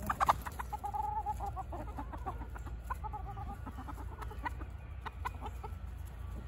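A small flock of chickens clucking as they peck at scattered seed: a few short clicks at the start, then drawn-out, held clucks about a second in and again around two and three seconds, with shorter calls later.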